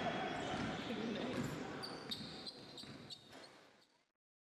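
Indoor basketball practice: balls bouncing on a hardwood court with players' voices in the background, fading away over about three seconds.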